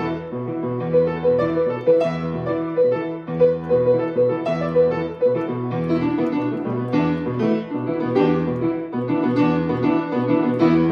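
Solo grand piano playing an improvised piece: a middle note struck again and again over low bass notes that recur about once a second, with more upper notes joining in the second half.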